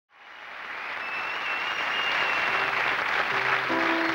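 Studio audience applause fading in, then grand piano chords starting a song's intro about halfway through, under the continuing applause.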